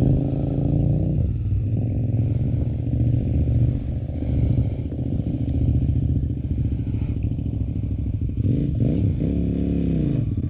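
Adventure motorcycle engine idling steadily close by, with a brief rev rising and falling near the end.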